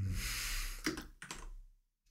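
Typing on a computer keyboard: a few separate key clicks about a second in.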